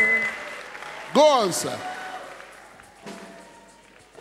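Congregation applause fading away after music stops at the very start. About a second in, one loud voice calls out once, its pitch rising and then falling.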